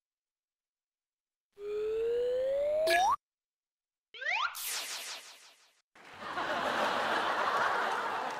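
Dead silence for about a second and a half, then an edited-in cartoon comedy sound effect: a held tone that slides sharply upward and cuts off, followed by a quick rising whistle-like glide. In the last two seconds an audience laughs.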